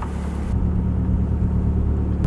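Steady low mechanical hum of the ship's machinery running.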